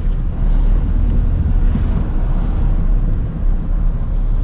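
Ford pickup truck driving slowly, heard from inside the cab: a steady low engine and road rumble, with wind noise through the open side window.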